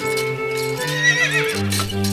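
Background music with a horse whinny sound effect laid over it about a second in.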